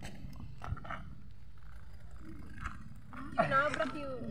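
People talking in the background, with a louder burst of speech near the end.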